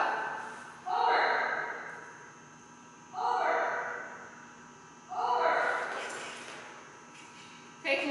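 A person's voice calling a one-word cue three times, about two seconds apart, each call echoing in a large hall.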